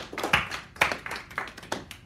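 A few people clapping briefly: separate, uneven hand claps that thin out toward the end.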